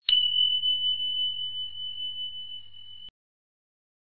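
A single high, bell-like ding: one pure tone struck sharply, slowly fading over about three seconds, then cut off abruptly. A notification-bell sound effect for an animated subscribe button.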